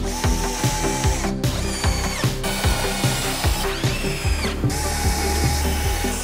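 Cordless drill running into a plywood worktop in several short runs, its motor whine sliding up and down in pitch as it starts and stops. Background music with a steady beat plays under it.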